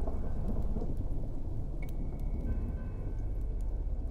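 Thunderstorm sound effect: low rumbling thunder with a steady rain hiss and scattered drop ticks. A couple of faint high held tones come in about halfway through.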